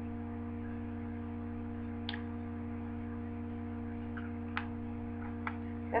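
Steady electrical hum with several steady tones over it, broken by a few faint clicks at about two, four and a half, and five and a half seconds in.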